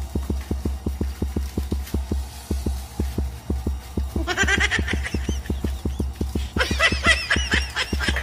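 Tense background music built on a steady low pulsing beat, about five beats a second. About four seconds in, and again near six and a half seconds, a comic sound effect of high, wavering calls plays over it.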